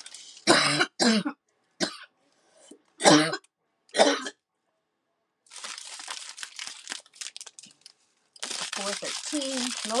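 A woman coughing several times in short, loud bursts over the first four seconds. Then the soft crinkling of sealed plastic bags of diamond-painting drills being handled.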